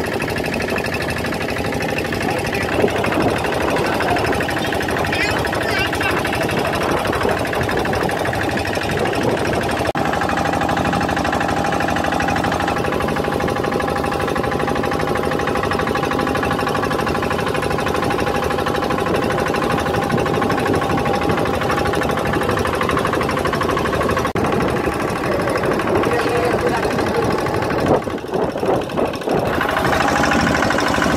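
A small boat's diesel engine running steadily under way, with a fast, even knocking rattle and a steady hum. The sound briefly drops and wavers about two seconds before the end.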